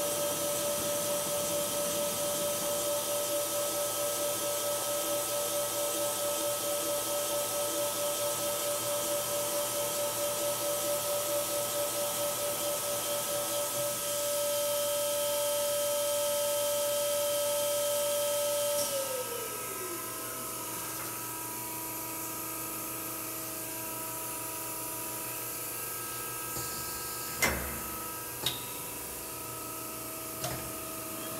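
Hauser S 35-400 CNC jig grinder's grinding spindle running with a steady high whine and hiss, then winding down with a falling pitch about two-thirds of the way in, leaving a lower machine hum. Two sharp knocks come near the end.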